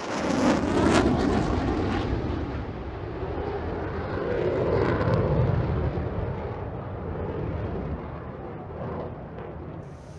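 Airbus A380 jet engines at takeoff power as the four-engined airliner lifts off and climbs: a continuous rushing jet noise, loudest in the first couple of seconds and easing off near the end.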